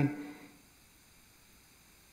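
A man's spoken word trailing off in the first half-second, then near silence: faint room tone with a light hiss.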